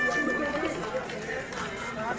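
People talking nearby in a crowd: background conversation and chatter.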